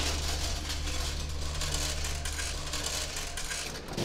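A steady low mechanical hum, with one sharp knock right at the start.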